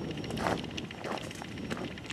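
Quiet, faint footsteps of a person walking, with a low background hiss.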